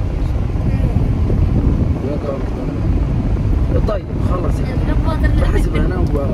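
Road and engine noise inside the cabin of a moving car: a steady, loud low rumble, with voices talking over it.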